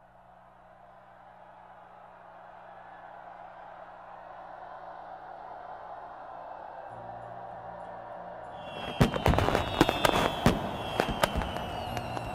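A wash of noise swells slowly over a low steady drone. From about nine seconds, fireworks go off: a rapid volley of sharp bangs and crackles with a few falling whistles.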